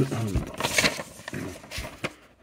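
Paper instruction leaflet rustling as it is unfolded and handled, with a dull bump early on and another near the end.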